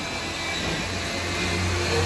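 Steady mechanical rushing noise over a low hum, growing a little louder.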